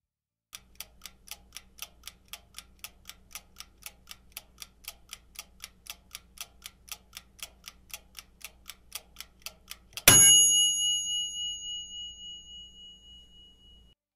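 Countdown-timer sound effect: a clock ticking steadily, about four ticks a second, then a single loud bell ring about ten seconds in that slowly dies away with a slight wobble, signalling that time is up.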